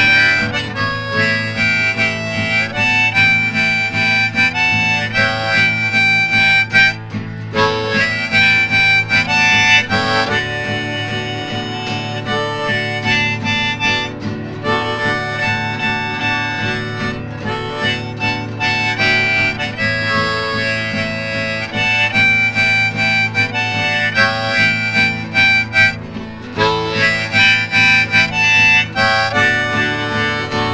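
Harmonica in a neck rack playing the melody over a strummed Yamaha acoustic guitar, an instrumental break between verses of a country song.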